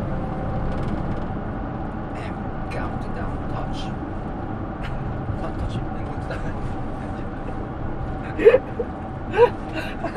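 Steady low rumble of a moving vehicle heard from inside its cabin, with short bursts of laughter about eight and a half seconds in and again a second later.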